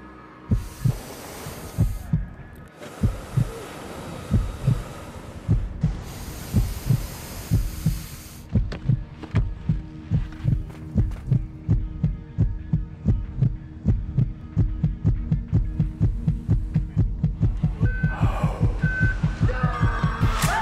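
A deep heartbeat-like thumping in the soundtrack, speeding up steadily from about one beat a second to about three a second. Rushing swells sound over it in the first eight seconds, and two short beeps come near the end.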